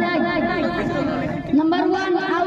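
A boy's high voice speaking into a handheld microphone, its pitch held fairly even, with a brief break about a second and a half in.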